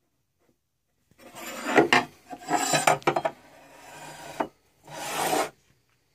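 Rubbing and scraping against a wooden surface in several irregular bursts, starting about a second in, with a short break before a last burst near the end.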